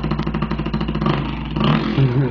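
A man's vocal imitation of a dirt bike engine: a fast, buzzing pulse made with the mouth, changing about a second in and getting louder near the end like the bike revving.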